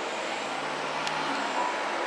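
Steady city street background noise: a low, even hum of distant traffic.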